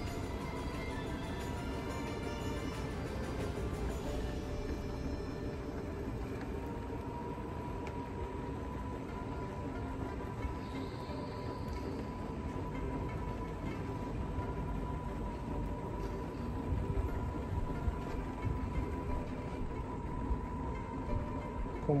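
Background music over the steady whine of a powered wheelchair's motors and the rumble of its wheels rolling on paving tiles.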